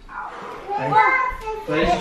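Children's voices: high-pitched, excited exclamations and chatter that start about a second in, after a quieter moment.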